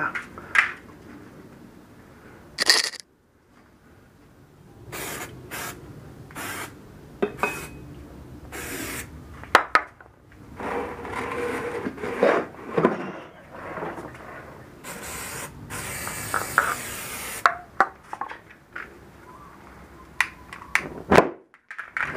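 Aerosol ether can spraying in a few hissing bursts, the longest about two seconds long two-thirds of the way through. Scattered knocks and scrapes come from the small tyre and the can being handled on a concrete floor.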